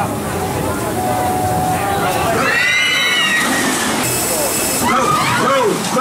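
Rita's recorded launch-countdown audio playing over the station speakers: a voice calling 'Go! Go!' near the end, over a steady rushing noise.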